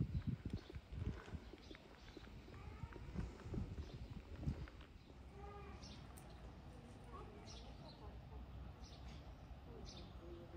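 Footsteps on a cobblestone path: irregular low knocks and scuffs, denser in the first half, with faint voices in the distance.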